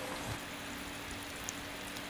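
Thick tomato stew frying in oil in an enamelled pot, a soft, even sizzle with a faint steady hum underneath.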